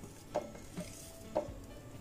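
Spatula scraping ground spices off a plate into a plastic chopper bowl, with two light clicks about a second apart as the plate and spatula knock the bowl.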